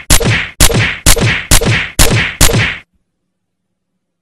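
A cartoon whack sound effect, repeated about twice a second: six sharp, loud strikes that stop abruptly about three seconds in.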